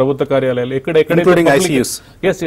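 A man talking, continuous speech only.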